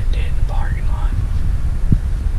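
A man whispering for about the first second, over a steady low rumble.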